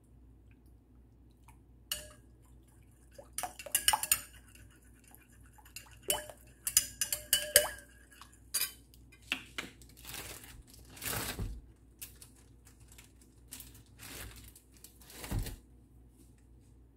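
Metal spoon stirring liquid in a ceramic bowl, clinking and scraping against its sides. The clinks come in several quick bursts with a short ring, followed by a few longer scrapes.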